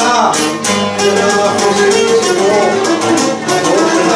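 Live folk music from a small string ensemble: a bowed string instrument carries a gliding melody over steady strummed plucked-string accompaniment.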